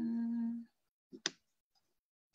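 A woman's short hummed 'mmm' held at one steady pitch for about half a second, as if thinking, followed about a second later by a brief sharp click-like sound.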